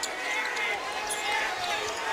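Basketball being dribbled on a hardwood court under the steady noise of an arena crowd.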